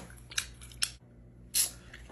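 Three short, sharp clicks about half a second apart, then a brief rustle-like hiss near the end.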